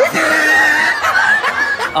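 Laughter.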